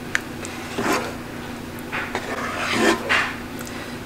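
Spoon stirring thick chili in a cooking pot: three wet stirring strokes about a second apart, with a light click near the start.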